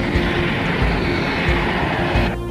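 Jet airliner sound effect: a loud rushing jet-engine noise as the plane passes overhead, laid over background music with a steady beat.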